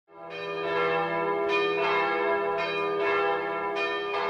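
Bells chiming as an opening theme, a new strike roughly every half second to second, each one ringing on over a steady low drone.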